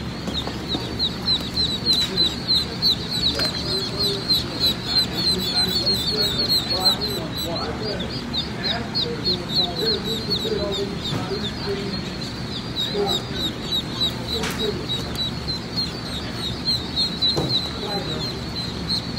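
A crowd of newly hatched Blue Swedish ducklings peeping nonstop, many rapid high peeps overlapping, over a steady low hum.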